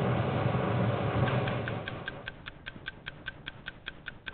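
A steady noisy background, then from about a second in a fast, even ticking at about five ticks a second.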